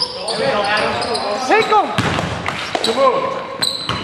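Basketball being played in a gym: players shouting to each other, with the ball thudding on the hardwood court and a sharp knock about two seconds in.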